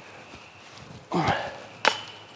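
A short falling groan about a second in, then a sharp metallic clank with a brief ringing tail near the end: a putted disc striking the metal disc golf basket and failing to go in.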